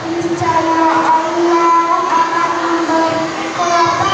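A child chanting Quran recitation (tilawah) in long, held melodic notes.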